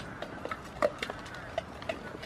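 Poultry calling in a few short clucks, among scattered small clicks and rustles.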